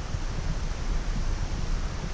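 Wind buffeting the microphone: a gusty, uneven low rumble with a steady hiss above it.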